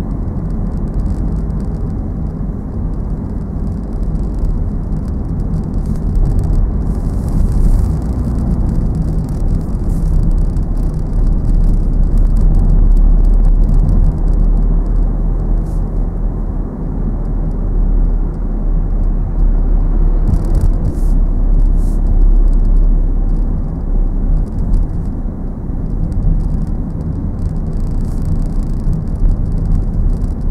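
Car cabin noise while driving in town traffic: steady low engine and road rumble heard from inside the car, with tyres running on a wet road.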